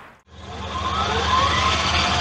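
A steady engine drone with a low hum. It starts after a short break about a quarter second in, then grows louder, with a faint rising whine over it.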